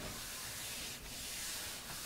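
Hands rubbing over the back of a sheet of computer paper pressed face down on an acrylic-coated gel printing plate: a faint, steady rubbing of skin on paper, briefly easing about a second in.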